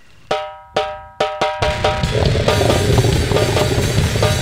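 A goregrind song kicks off: a few sharp, ringing percussion hits in the first second and a half, then the full band crashes in loud and dense with drums and distorted guitar.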